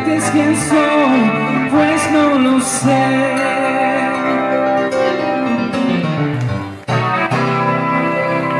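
Live keyboard and guitar duo with a male singer, amplified through a PA. There is a short break about seven seconds in, then a chord rings on.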